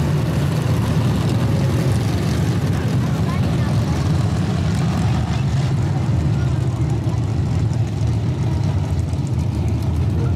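A field of dirt-track modified race cars running at speed together, their engines making a loud, steady drone.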